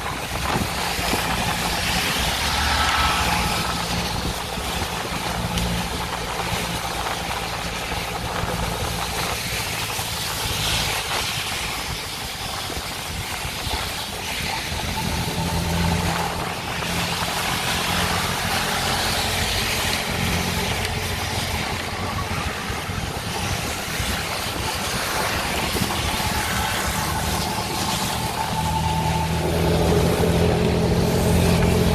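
Auto rickshaw (tuk-tuk) engine running steadily as it drives, heard from inside its open cabin, with its pitch shifting now and then and road noise over it.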